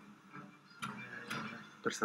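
A man speaking Greek, fairly quiet and broken by short pauses.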